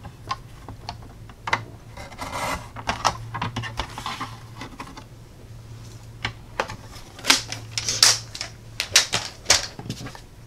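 Sliding-blade paper trimmer cutting a strip off a sheet of cardstock, a rasping stroke a couple of seconds in, followed by a run of sharp clicks and taps as the trimmer and paper are handled. A steady low hum lies underneath.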